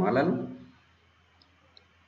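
A man's voice finishing a spoken phrase, then near silence with faint room hiss and two tiny clicks in the pause.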